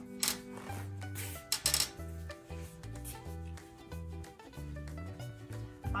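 Background music with a bass line stepping from note to note. Over it come a few brief rubbing knocks in the first two seconds, as the quilt is handled and wound onto the frame's rail.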